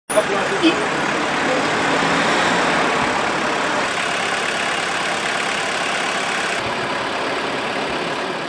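Steady road-traffic noise from cars driving past, with car engines running close by.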